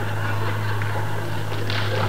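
Steady low mains hum under hiss from an old live recording, with no clear event standing out.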